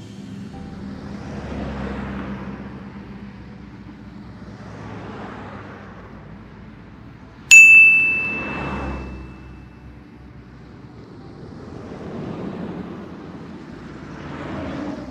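A single bright metallic ding, struck once about halfway through, with a clear high ring that fades over a second or two. Under it, a soft rushing noise swells and fades every three to four seconds.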